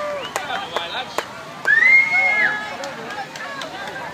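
Several people talking indistinctly at once, with scattered clicks and knocks. A loud high-pitched call, held for about a second, comes about halfway through.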